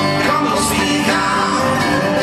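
A live country-bluegrass band playing, with banjo and acoustic guitars, and a man singing over them.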